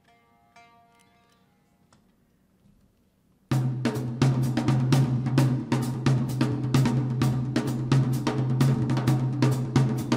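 Faint plucked Tsugaru shamisen notes dying away, then about three and a half seconds in the full band comes in at once: a drum kit with cymbals playing quick, even strokes over a held low bass note.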